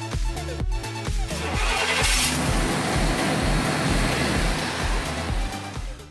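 Electronic dance music with a steady beat, and under it, about two seconds in, a 1994 GMC Sierra pickup's engine starting and running as the truck pulls away.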